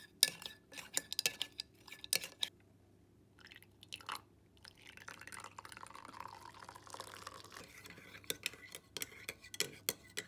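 A metal teaspoon clinking against a ceramic mug as it stirs coffee. For a few seconds in the middle, hot water pours from a kettle into the mug, and then the spoon clinks again in a second round of stirring.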